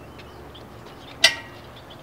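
Steady faint outdoor background noise with a single sharp click, with a brief ring, about a second in.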